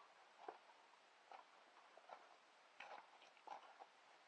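Near silence outdoors, broken by faint, irregular light ticks and crunches about once a second.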